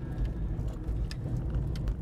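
Car driving over a cracked concrete-slab road, heard from inside the cabin: a steady low road and tyre rumble, with a few short, light knocks as the car runs over the broken slabs.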